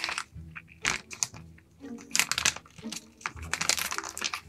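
A thick clear plastic vacuum-seal bag crinkling in irregular bursts as it is handled and cut with scissors.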